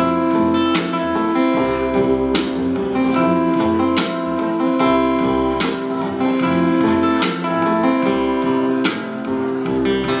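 Live acoustic blues band playing an instrumental passage: acoustic guitar strumming chords at a slow, even beat over a plucked upright bass.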